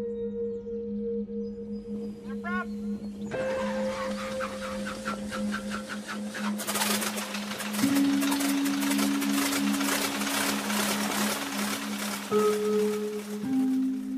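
Soft music with sustained notes, joined about three seconds in by a biplane's radial engine running with a regular beat. The engine grows louder and fuller about halfway and keeps running to near the end.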